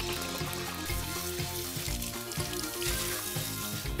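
Liquid poured from a coffee maker's glass carafe splashing into a sink, a steady hiss under background music with a steady beat.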